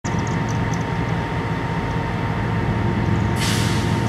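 BNSF ES44C4 diesel-electric locomotive, a GE GEVO-12 V12, running as it approaches with a steady low rumble. A burst of hiss starts about three and a half seconds in.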